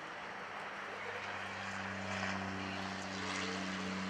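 A steady, low engine drone that comes in about a second in and grows a little louder, holding one pitch.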